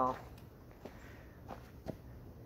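Footsteps on snow: about four separate soft steps as a person walks.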